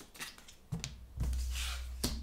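Tarot cards being handled: a card drawn off the deck and laid on the cloth-covered table, with a few faint clicks, then a brief sliding rustle over a low rumble from hands against the table.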